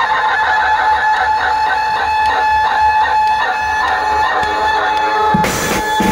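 Mumbai banjo-party band playing: a high melody line holds one long note over a light, even beat, then the drums and cymbals come in loud about five and a half seconds in.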